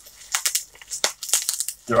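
Packaging crinkling and crackling in a quick, irregular string of small sounds as it is handled and unwrapped.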